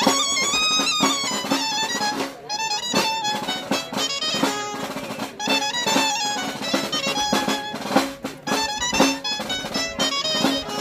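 A lively folk dance tune in fandango style (a mudanza afandangada), played on a high, bright-toned pipe, with a snare drum beating a steady rhythm underneath.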